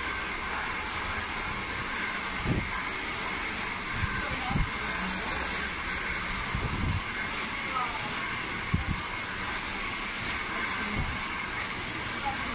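Handheld hair dryer blowing steadily: a constant hiss of air with a faint steady whine. There are a few brief low thumps as the hair is worked with the dryer.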